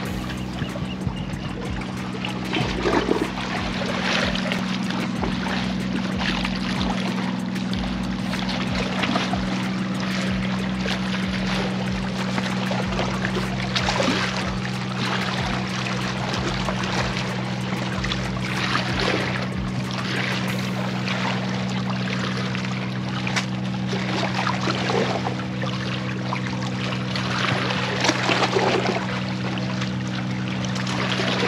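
Shallow seawater splashing and sloshing against granite jetty rocks as a large red drum (bull red) is held at the waterline and released, with irregular splashes throughout. A steady low hum runs underneath.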